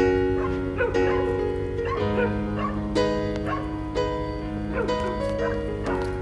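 Slow piano music, a new note or chord about once a second, with kittens mewing over it in many short wavering calls.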